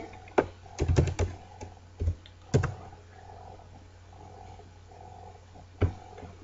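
Computer keyboard keys being pressed: a quick cluster of keystrokes in the first second or so, a few more spaced out, then a pause and one last keystroke near the end, over a faint low hum.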